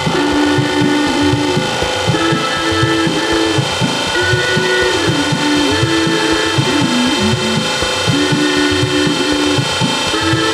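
Improvised electronic music played on a computer: a sliding, wavering mid-pitched melody line over a dense bed of held tones and a quick, repeating low pulse.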